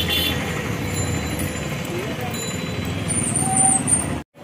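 Steady roadside traffic noise: the rumble of auto-rickshaw and bus engines.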